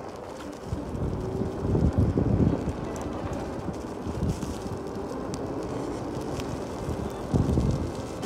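Wind rushing over the microphone of a moving electric scooter, a low rumble with louder gusts about two seconds in and again near the end.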